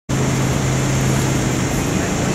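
Loud, steady outdoor background noise with a low, constant hum underneath, cutting in abruptly at the start.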